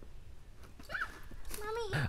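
A child's voice, faint and high-pitched, making a few short vocal sounds in the second half, with a quiet outdoor background between them.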